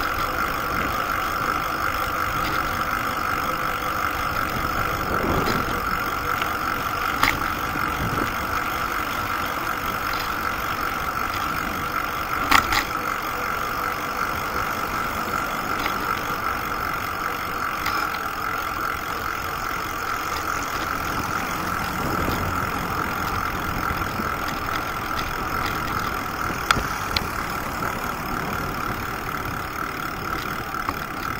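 Steady hum and rumble of a bicycle being ridden along a paved path, with a few sharp clicks or knocks, three in all, spread through the ride.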